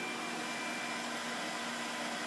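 Steady background hiss with a faint high-pitched whine and a low hum underneath; nothing starts or stops.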